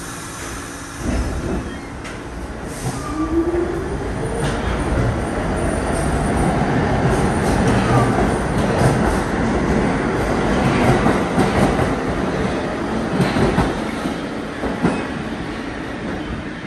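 New York City subway train running along the track past the platform. It grows louder to a peak about halfway through and then eases off, with wheels clicking over rail joints and a short rising whine about three seconds in.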